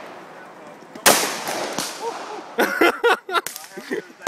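A single .357 Magnum shot from a two-shot Uberti Derringer Maverick about a second in: one sharp crack with an echoing tail that fades over about a second. Voices follow it.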